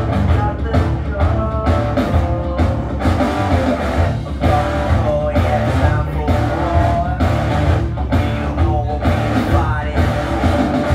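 Live rock music led by an electric guitar, with a steady beat underneath.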